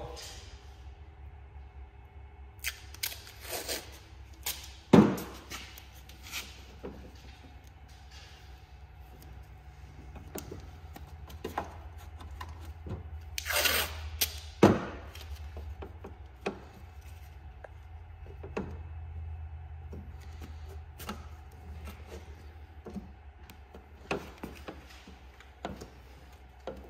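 Blue painter's tape being pulled off the roll and torn, with a longer rip about halfway through, among scattered taps and knocks of handling against the snowmobile's tunnel and bumper, over a steady low hum.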